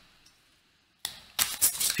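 Near silence for about a second, then a tarot deck being shuffled by hand: a rapid run of papery clicks.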